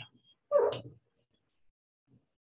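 A man's voice makes one short vocal sound about half a second in, then near silence.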